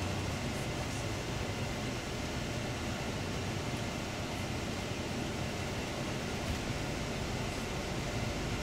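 Steady engine and road noise inside a Setra touring coach's cabin as it drives along, an even rumble and hiss with no change.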